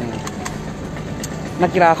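Steady background rumble like a motor vehicle's engine running, filling a pause in a man's talk; his voice comes back near the end.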